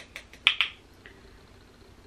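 Quick run of light plastic clicks and taps, about six in the first second with the loudest about half a second in: a makeup brush being loaded with powder from its container and tapped to knock off the excess.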